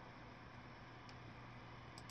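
Near silence: room tone with a faint steady low hum and a faint tick about a second in.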